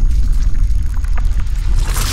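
Designed intro sound effect for an animated logo: a deep, heavy rumble with scattered crackles as a sphere shatters, and a whoosh swelling near the end.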